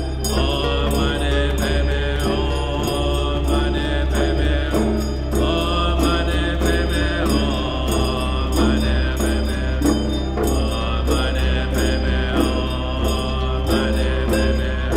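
A man chanting a Buddhist mantra over a steady low drone, with acoustic guitar accompaniment.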